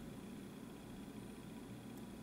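Faint steady room tone: a low hum and hiss with a thin high whine, and no distinct sounds.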